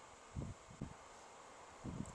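Quiet room tone: a steady faint hiss, with two soft low thumps in the first second.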